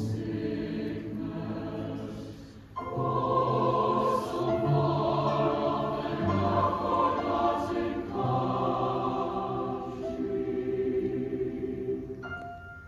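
Large SATB mixed choir singing sustained chords, accompanied by piano and cello. About three seconds in the sound thins for a moment, then the full choir comes back in louder.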